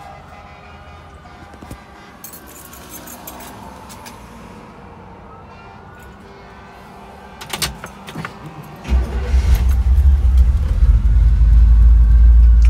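Keys jangling at the ignition of a 1967 Chevrolet Camaro, then its V-8 starts about nine seconds in and runs at a loud, low idle through headers and Flowmaster mufflers.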